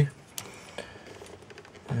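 Faint clicks and handling noise as a heatsinked DDR3 memory module is lined up over a motherboard RAM slot, with a sharp tick about half a second in.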